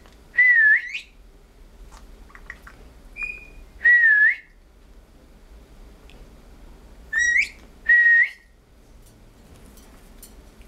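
Blue-headed pionus parrot whistling: four clear whistles at one steady pitch with a small wavering dip, in two pairs about three seconds apart. Some of the whistles end in a quick upward sweep. A short, fainter, higher note comes between the pairs.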